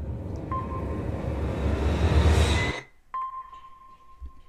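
Outro logo sting from a music video: a rising whoosh sound effect with a deep rumble swells for about two and a half seconds and cuts off suddenly. It is followed by a sharp click and a single held electronic ping tone.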